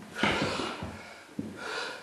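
A man breathing hard and loud, two heavy breaths, while doing burpees, with soft knocks of hands and feet landing on a wooden floor. The hard breathing is the strain of minutes of non-stop burpees.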